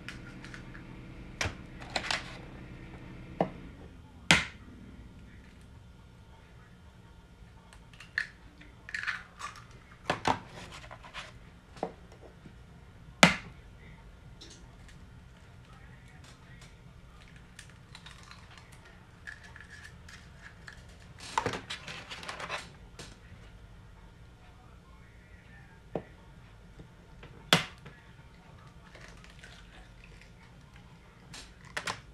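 Electric hand mixer running for the first few seconds, then switched off. After that come scattered sharp knocks and clicks, a dozen or so, as eggs are cracked against the mixing bowl and dropped into the batter.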